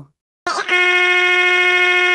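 A voice-like sound starts about half a second in and is held at one flat, unchanging pitch with a fast flutter.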